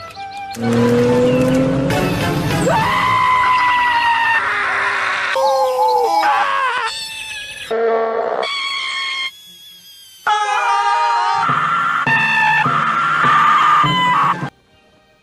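A string of loud screams from different cartoon characters spliced one after another, each cut off abruptly at the next clip, with a brief lull of about a second partway through.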